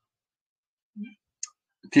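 A silent pause broken by two small, short clicks, a low one about a second in and a sharp high one soon after. A man's voice starts speaking right at the end.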